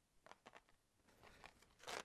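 Near silence, with a few faint clicks and rustles of a cardboard card of stitch markers being handled and put down.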